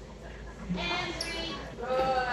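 A woman's voice calling out, made distant and echoey by a large, hard-floored hall, with a brief high chirp about a second in.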